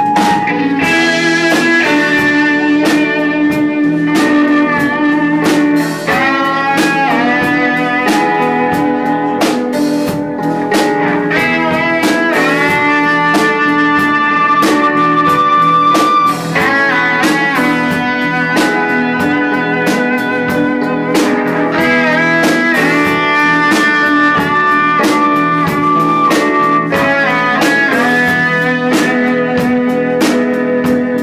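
Live band playing a blues-rock instrumental passage: electric guitar with keyboard, bass guitar and drum kit, long held notes over a steady drum beat.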